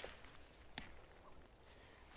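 Near silence, with one faint click a little under a second in.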